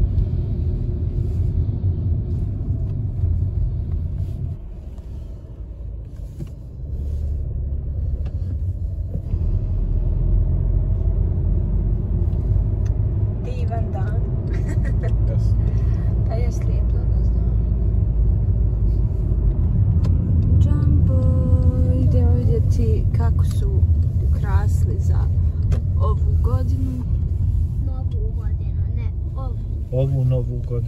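Steady low rumble of road and engine noise inside a moving car's cabin, easing off briefly a few seconds in.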